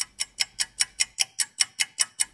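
Ticking clock sound effect used as a quiz countdown, about five sharp, even ticks a second.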